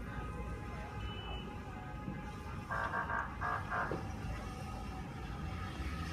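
Fire scene with a steady low engine rumble from the fire appliances and a steady alarm tone. Two loud horn blasts sound about three seconds in.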